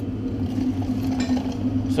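Steady low mechanical hum of a running machine, an even drone with a couple of constant low tones.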